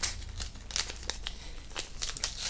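Paper envelope being opened by hand: a series of short, crisp paper rustles and tears.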